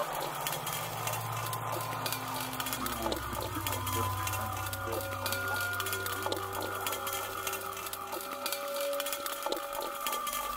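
Quiet ambient electronic music: sustained held tones over a low drone that swells up and then fades away, with a faint crackly texture on top.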